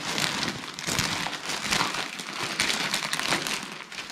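Clear plastic wrapping around a folded fleece blanket crinkling and crackling irregularly as it is handled.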